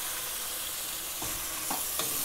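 Freshly added tomato slices and onions sizzling in hot oil in a nonstick pan, a steady hiss, with a couple of soft spatula strokes against the pan in the second half as they are stirred.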